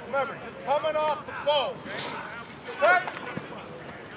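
Men's voices shouting several short, sharp calls across a football practice field, loudest near the end.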